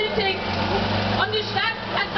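People talking close by over the low, steady hum of an idling engine.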